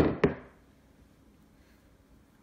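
A glass mixing bowl set down on a hard countertop: two sharp knocks about a quarter second apart, each dying away quickly.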